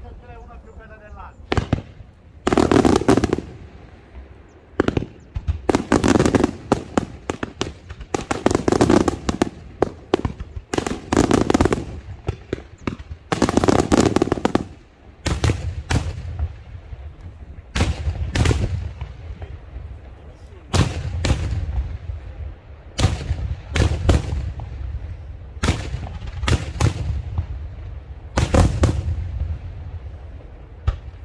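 Daytime aerial fireworks shells bursting overhead in a long run of loud bangs, many coming in rapid clusters, with short gaps between volleys.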